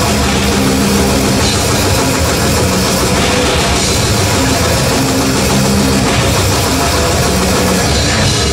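Death metal band playing live: loud, heavily distorted electric guitars and bass over a drum kit, in a dense, unbroken wall of sound.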